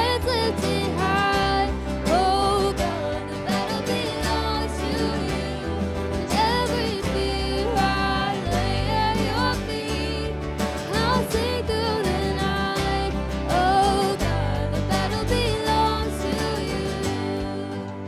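Live worship band playing a song: women's voices singing the melody together over drums, bass guitar, keyboard and acoustic guitar.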